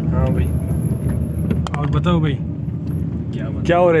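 Car heard from inside the cabin, its engine and tyres making a steady low rumble on a rough dirt road, with a few light clicks about a second and a half in.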